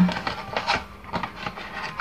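Cardboard hair-dye box handled in the hands, giving a few short rubbing, scraping rustles.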